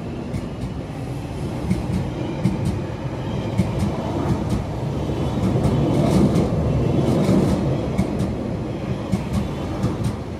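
A London Underground 1996 stock Tube train pulling out along the platform, a steady rumble of wheels on rail with many sharp clicks as the wheels cross rail joints, growing loudest a little past the middle.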